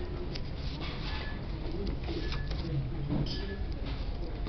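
Book pages being flipped and handled, with short paper rustles over a steady low rumble. A low cooing bird call wavers through it.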